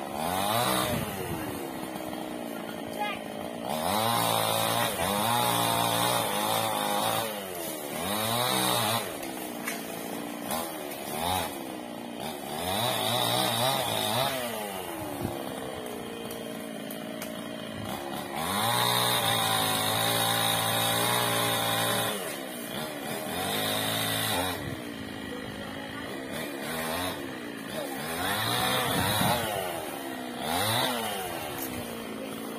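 Chainsaw running high in a tree, revving up to full throttle for cuts of a few seconds each and dropping back to idle between them, about half a dozen times, as teak branches are cut.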